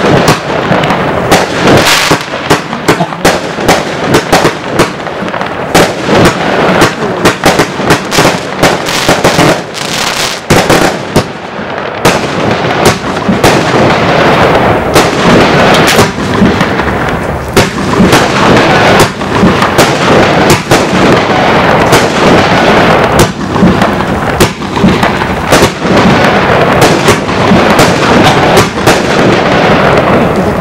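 Lesli Bestseller 'Big Show' compound firework cake firing shot after shot in quick succession, several sharp reports a second. A dense crackle from the bursting stars runs between the reports.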